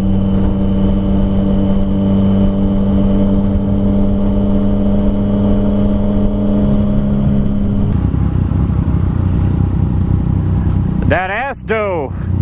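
Yamaha FZ-09's three-cylinder engine under way at a steady speed, its even note holding for the first two-thirds. About eight seconds in the steady note breaks up into a rougher, lower sound as the bike slows into traffic. A short laugh near the end.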